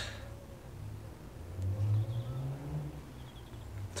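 A low engine hum that grows louder and rises in pitch in the middle, with faint outdoor background.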